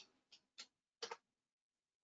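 Near silence with a few faint, short clicks, about three in the first second or so.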